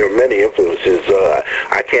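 Speech only: a man talking in an interview, with the sound cut off above about 8 kHz.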